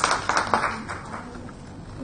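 Scattered applause from a small audience, fading out about a second in.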